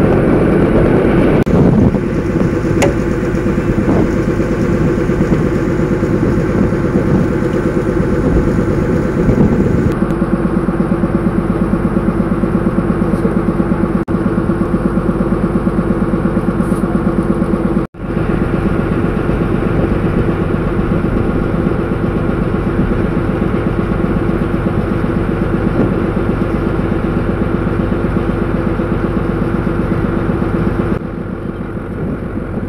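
Passenger boat's engine running steadily, heard from on board. It briefly cuts out a little past halfway.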